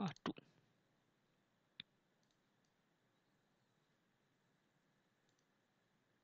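A single computer mouse click about two seconds in, then near silence with a few faint ticks.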